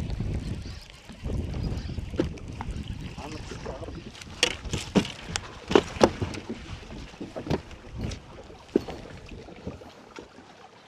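Low wind rumble on the microphone, then a cluster of sharp knocks and clatter in the middle: gear being handled on a bass boat's deck as a landing net is grabbed.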